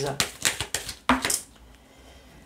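Oracle cards being handled: a quick run of crisp card snaps and slides in the first second as a card is drawn from the deck and laid on the table mat.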